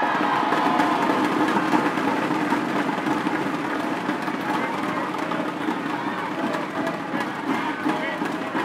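Large arena crowd cheering and shouting as a point is won, breaking out suddenly and staying loud throughout.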